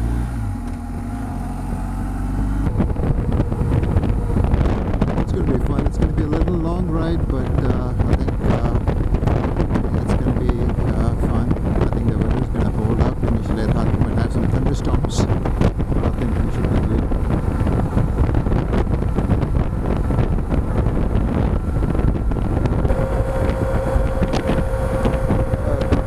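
BMW R1200 GS boxer-twin motorcycle pulling away and gathering speed, with heavy wind noise on the microphone from about three seconds in, once it is up to road speed. A steady tone joins the engine and wind near the end.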